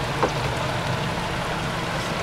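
A steady low hum under a constant hiss, with one brief soft knock about a quarter second in.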